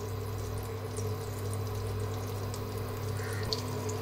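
Butter and oil sizzling steadily in a hot kadai while oil is poured in from a bottle, over a steady low hum.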